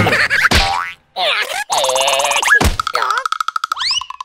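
Cartoon larva character's wordless squeaky vocalizing, with springy boing sound effects and a quick rising whistle-like glide near the end.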